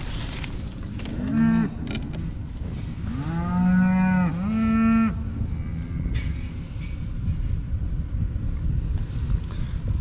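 Cattle mooing: a short moo a little over a second in, then a longer, drawn-out moo from about three to five seconds.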